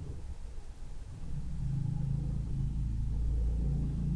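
A low rumble in the background, growing a little louder after the first second and then holding steady.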